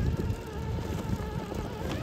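Traxxas TRX-4 RC crawler's Hobbywing Fusion Pro brushless motor and gear drivetrain whining as it crawls slowly over rubble, the pitch wavering slightly with the throttle, over a low rumble.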